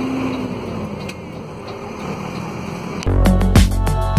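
Steady engine and road noise inside the cab of a moving Mercedes-Benz Accelo 1316 truck, then loud music with a heavy bass beat cuts in abruptly about three seconds in.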